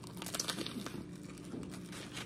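Close-up biting and chewing of a chicken Caesar salad sandwich on oven-toasted bread with fried breaded chicken: a run of small crisp crunches and crackles.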